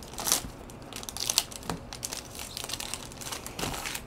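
Foil trading-card pack wrapper crinkling as gloved hands handle the pack and slide the cards out, in a run of irregular sharp crackles.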